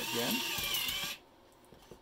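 XCP CTD-200 card dispenser's motor and gear train running for about a second as it feeds out a card, with a whine that dips slightly in pitch, then stopping abruptly.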